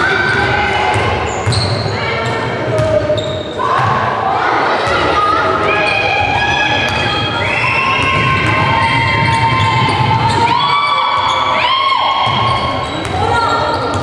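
Indoor basketball game: high-pitched voices shouting long, drawn-out calls, several in a row, over a basketball bouncing on the court floor.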